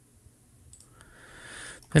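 A few faint computer mouse clicks a little under a second in, then a short rising hiss of a breath drawn in just before a man's voice starts to speak at the very end.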